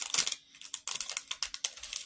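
Plastic candy wrapper crinkling as it is handled, a quick irregular run of sharp crackles.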